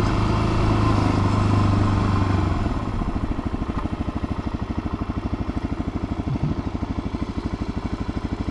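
Suzuki DR-Z400's single-cylinder four-stroke engine, first running steadily as the bike rolls along, then from about three seconds in dropping to a slow, even putter of about a dozen firing pulses a second as the bike slows towards a stop.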